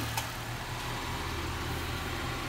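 Honda Civic engine idling steadily right after a jump start from a portable jump box, with one brief click just after the start.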